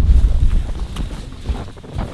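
Low rumble of wind buffeting the microphone, loudest at the start and fading through the second half, with a couple of faint soft knocks.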